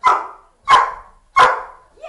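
A dog barking three times, loud sharp barks about two-thirds of a second apart.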